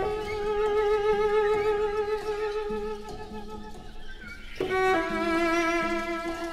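Solo cello played with the bow, holding one long singing note with wide vibrato that fades out after about three seconds. A new, slightly lower held note begins near the end. A quieter low note sounds underneath at times.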